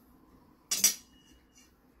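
A short clatter of metal cutlery against a plate, with a brief faint ring after it.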